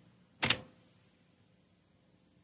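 A short instant-messenger alert sound from a computer, heard once about half a second in and lasting well under a second. It is loud enough to startle.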